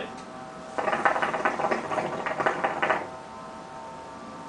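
Hookah water bubbling in the base as smoke is drawn through the hose: a rapid gurgling rattle that starts about a second in and stops after about two seconds.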